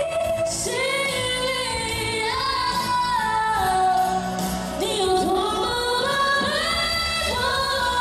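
A woman singing a slow pop melody into a microphone through PA speakers, with long held notes that slide between pitches, over a musical accompaniment.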